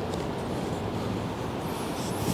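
Steady background noise with no distinct sounds standing out.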